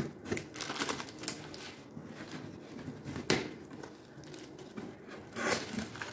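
Scissors cutting packing tape on a cardboard box, then the cardboard flaps being pulled open with crinkling, scraping and tearing of tape. A sharp crack about halfway through is the loudest sound.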